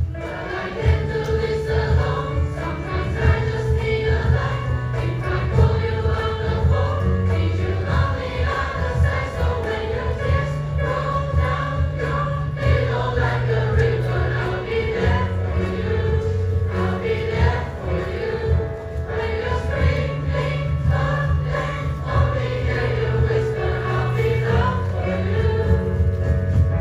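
A mixed choir of boys and girls singing a Christian song together over instrumental accompaniment, whose low bass notes are held and change every few seconds.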